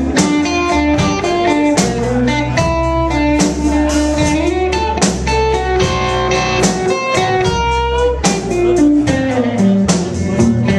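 Live blues band playing a slow blues with electric guitars, bass and drums. A guitar line rides over the rhythm and bends one note upward about halfway through, with cymbal and drum hits throughout.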